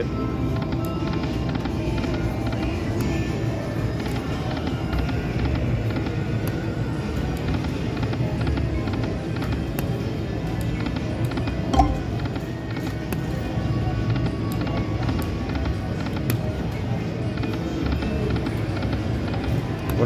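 Slot machine game music and reel-spin sounds over the steady din of a casino floor, through several spins in a row. A single short knock about twelve seconds in.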